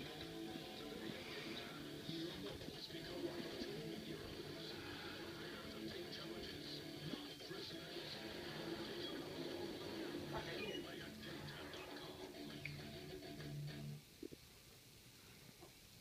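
Faint background music and speech, as from a playing television, that drops away to near silence about two seconds before the end.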